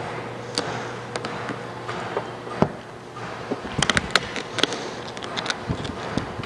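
Vinyl wrap film crackling and clicking as it is stretched and pressed by hand over a car's body panel, with scattered snaps and a quick cluster of crackles about four seconds in. A faint steady hum runs underneath.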